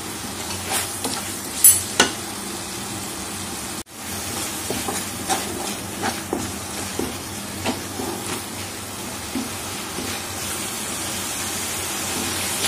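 Spice paste frying with a sizzle in hot oil in a metal kadhai, while a wooden spatula stirs it, adding frequent light scrapes and taps on the pan. The sound cuts out for an instant about four seconds in, then carries on.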